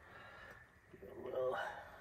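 A man's short, quiet vocal sound, a murmur or half-spoken word, about a second in, over faint room tone.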